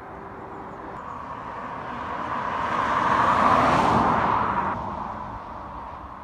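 A road vehicle passing by: tyre and engine noise builds to a peak about three and a half seconds in, then fades away.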